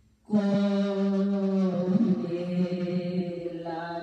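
A woman singing a Spanish praise song into a handheld microphone. She comes in just after a short pause and holds long, drawn-out notes, with the pitch moving a little about halfway through and again near the end.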